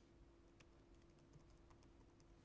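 Faint, irregular keystrokes on a computer keyboard as text is typed, over a faint steady low hum.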